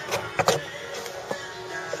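Background music playing, with a few sharp clicks and knocks scattered through it as the drill and camera are handled.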